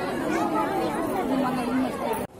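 Crowd chatter: many people talking at once, their voices overlapping in a steady babble.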